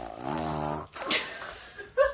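A toddler making a low, throaty vocal noise, held for under a second, then a breathy, rasping exhale.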